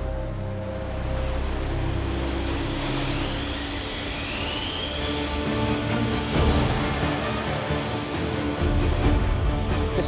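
Background music over the steady rumble and rush of a wind tunnel running, with a rising whine about three seconds in.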